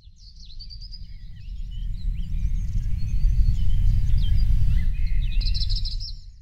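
Several small birds chirping and trilling over a loud, low outdoor rumble that builds over the first few seconds, with a louder rapid trill near the end.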